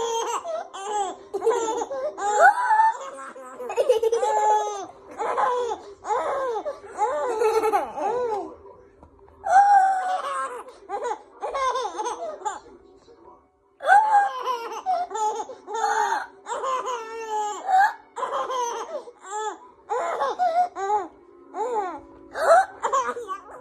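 A baby laughing, repeated bursts of high giggles and belly laughs, with a short pause a little past halfway before the laughing starts again.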